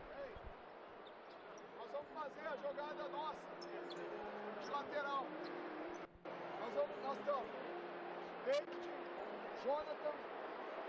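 Faint basketball-arena ambience: scattered distant voices and occasional light thuds over a low steady hum.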